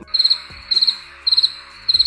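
Cricket-chirp sound effect, the comic 'crickets' gag for an awkward silence: four short chirps of rapid pulses, one about every 0.6 s, over a steady hiss.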